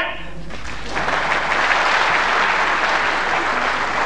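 Studio audience applauding, the clapping swelling in about a second in and then holding steady.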